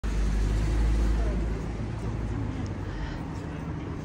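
City street ambience: a heavy low rumble, strongest for the first second and a half, then steady traffic noise with voices of people passing.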